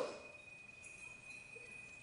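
Faint room tone with a thin, steady high-pitched whine that stops near the end.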